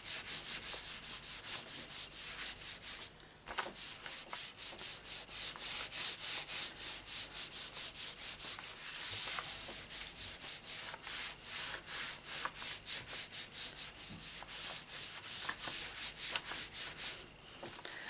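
Hands rubbing briskly back and forth over a scrap of paper laid on an inked rubber background stamp, pressing the stamp's ink onto the card. The strokes come quickly, about four a second, with a brief pause about three seconds in and another near the end.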